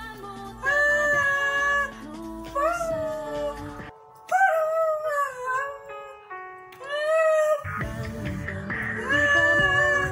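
Recorded song with a high voice singing long held notes over instrumental backing. The low part of the backing drops out about four seconds in and comes back strongly a little before the end.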